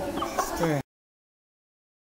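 Voice-like sounds with quickly bending pitch, cut off abruptly less than a second in, followed by dead silence.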